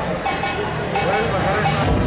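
A person's voice over a thinner stretch of the dance music. The bass beat comes back in near the end.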